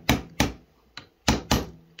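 A small hammer tapping metal pins into a wooden knife handle clamped in a bench vise: five sharp taps, unevenly spaced, each ringing briefly.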